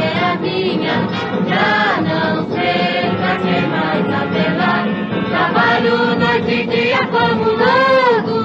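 Music from a 1954 Odeon 78 rpm record of a Brazilian popular song: a passage of the band's accompaniment, with held melody notes that waver in pitch, its top end cut off as on an old disc transfer.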